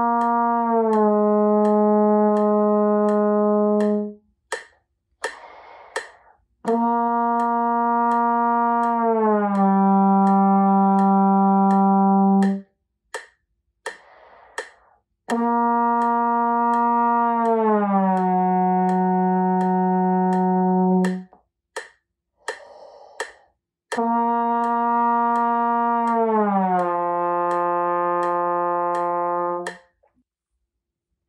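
A tenor trombone plays four long held notes. Each starts on the same pitch and slides down in a glissando to a lower note, each landing lower than the last. Short breaths come between the notes, and a steady ticking keeps time.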